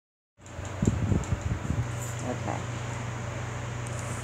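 Steady low hum of a ventilation fan or air-conditioning unit, with a few quick knocks and rattles in the first couple of seconds as a wire cage door is handled.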